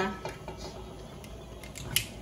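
A cooking utensil lightly ticking against a frying pan as oil is spread around it, with one sharp clack near the end.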